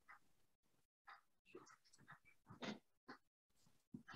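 Near silence on a video-call line, broken by a few faint, brief snatches of a voice.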